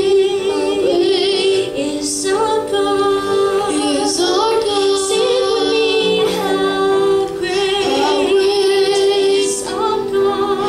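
A boy singing into a microphone with piano accompaniment, holding long notes with a wavering vibrato.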